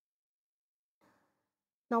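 Near silence, with a faint breath from the speaker about a second in, then a woman's voice starts speaking near the end.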